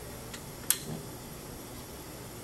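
A single sharp click, with a fainter tick just before it, as a wafer is handled and seated on a mask aligner's loading tray, over a steady low background hum.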